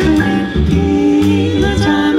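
Vocal jazz ensemble singing a swing tune in close harmony, with sustained chords over a low bass line from an upright bass.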